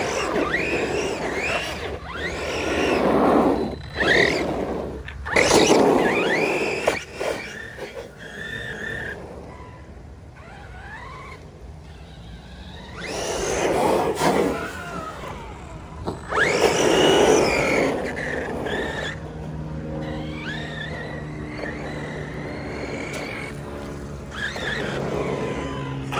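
Redcat Kaiju brushless RC monster truck driven in repeated full-throttle bursts on wet asphalt: a rising and falling motor whine with tyre hiss and spray, about six bursts with a quieter stretch in the middle. A steady low hum joins in over the last few seconds.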